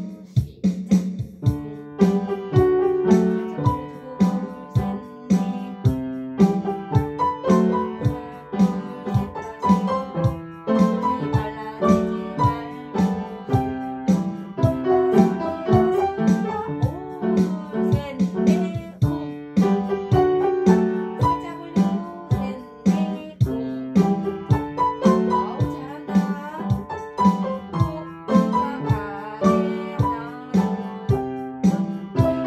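Upright piano playing a jazz piece at a steady beat, lower notes and chords under a higher melody.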